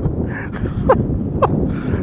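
Steady low outdoor rumble, with two brief faint sounds about a second and a second and a half in.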